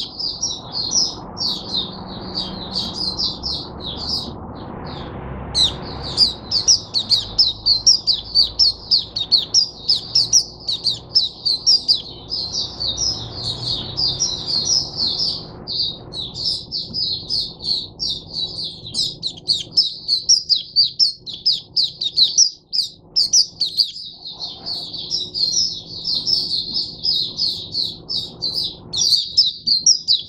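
White-eye (mata puteh) singing a long, fast, unbroken run of high twittering notes, pausing only briefly about four seconds in and again about sixteen seconds in.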